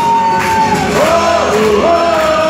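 Live band music with a male singer holding one long high note into the microphone, which ends just under a second in as the music carries on.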